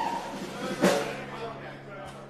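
A single drum hit from the band's kit about a second in, its pitch dropping as it rings, over a steady low hum from the stage amplifiers.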